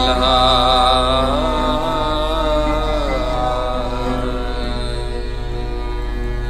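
Bowed Sikh string instruments, including a peacock-headed taus, playing a slow raag melody of gliding, wavering held notes over a steady low drone.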